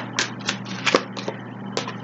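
A tarot deck being shuffled by hand: about six sharp card snaps, irregularly spaced, with a faint riffling rustle between them.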